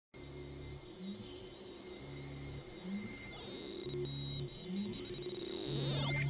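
Electronic intro music: a deep bass note pulsing about every two seconds under a steady high synth tone, with swooping pitch glides.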